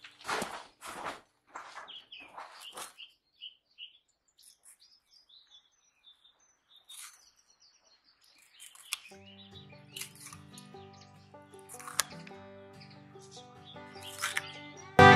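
Music fading out over the first few seconds, then a quiet stretch with faint bird chirps, and instrumental music coming back in about nine seconds in.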